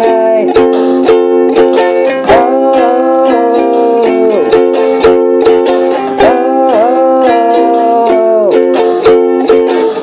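Ukulele strummed in a steady rhythm under wordless sung vocals of a song's chorus, 'ay-ay-ay' and 'ooo' notes held and sliding in pitch.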